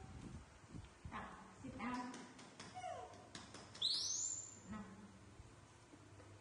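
A young macaque gives a short, high squeal that sweeps up in pitch about four seconds in, the loudest sound here. Before it come a brief voice and a run of light clicks.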